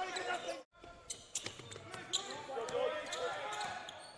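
Basketball bouncing on a hardwood court during live play in a hall with no crowd, with players' voices calling out. The sound drops out for a moment under a second in.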